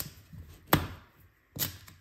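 Duck Tape being handled on a laminate floor: a few short, sharp snaps and taps, the loudest just under a second in, with the strip torn from the roll near the end.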